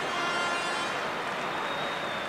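Steady noise of a large football stadium crowd, heard as an even wash of sound through the match broadcast.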